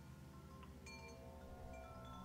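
Faint, sustained chime-like ringing tones, with a few soft, brief higher notes sounding now and then.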